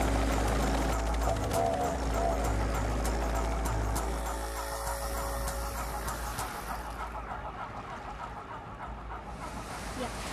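Light helicopter's engine and rotor running close by as it comes down onto the sand, with a steady low drone that cuts away about four and a half seconds in. A softer steady hiss follows and fades out.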